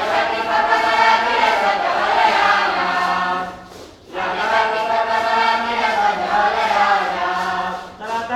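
A choir of voices singing a folk song in two long phrases with a short break between them, over a steady low held note.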